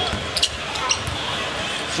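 A basketball being dribbled on a hardwood court, with a couple of sharp bounces, over the steady noise of an arena crowd.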